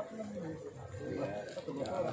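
Indistinct voices of people talking in the background, no clear words, with a brief click at the very start.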